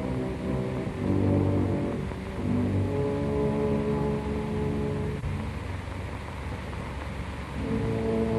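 Dark, slow orchestral film score of held low notes that shift every second or two, thinning out in the middle and swelling again near the end.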